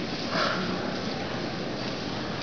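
Steady background noise of an indoor tennis hall, with a short breathy burst, like a sniff close to the microphone, about half a second in.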